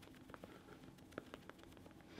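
Near silence with a few faint soft taps, the clearest a little after a second in, from a makeup sponge being dabbed against the skin of the cheek.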